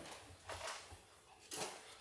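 Near quiet: indoor room tone with two faint, brief noises, one about half a second in and one near the end.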